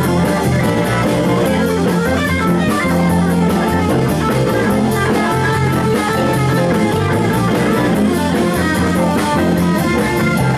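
Live blues-rock band playing: a Stratocaster-style electric guitar over a drum kit and a steady low bass line, continuous and loud.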